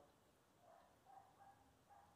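Near silence: room tone, with a few very faint, short sounds in the middle.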